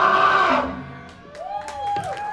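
A live rock band's loud distorted guitar chord ringing out and stopping about half a second in, then the crowd starts whooping and cheering with a few scattered claps.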